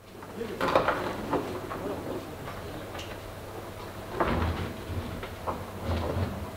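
A boat trailer carrying a Volzhanka 510 boat being pushed by hand across a concrete floor, giving a run of irregular clunks and rattles, loudest a little past four seconds in. A low steady hum runs underneath.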